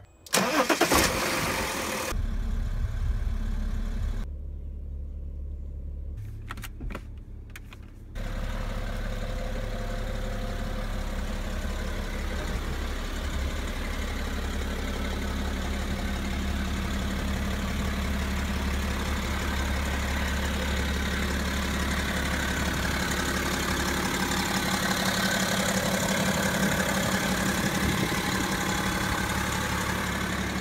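Car engine started by push button: it cranks and catches about half a second in, flares up briefly, then settles. From about eight seconds in it runs steadily with a low hum.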